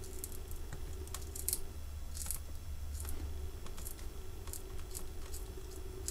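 Small, scattered clicks and crunches as steel combination pliers grip and wiggle the ceramic end of a thermal fuse, crushing the ceramic. Under them runs a faint steady hum.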